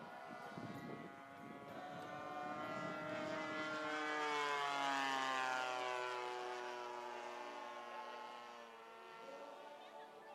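Engine of a radio-controlled aerobatic model airplane flying past. It grows louder towards the middle, then its pitch falls as it passes and the sound fades away.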